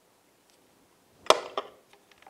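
A single sharp metal click about a second and a half in, from the wrench on the top spark plug of a 1968 Johnson 6 HP outboard as the plug is loosened.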